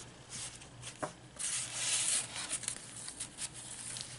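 Paper and card rustling and sliding as the tag and coffee-dyed pages of a handmade journal are handled, with a few light taps; the rustle is loudest in the middle.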